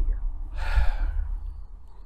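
A man's audible sigh, one breath lasting under a second, heard about half a second in with a low rumble of breath on the microphone.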